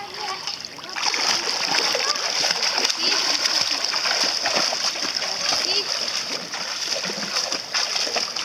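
A child swimming front crawl in a pool, arms and kicking feet splashing the water over and over. The splashing starts about a second in as he pushes off the wall, then runs on as a steady rush of small splashes.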